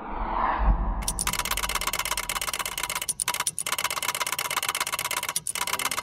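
Title-sequence sound effects: a swelling whoosh ending in a low boom, then a fast, steady mechanical ticking of a rolling counter, broken by a few short gaps.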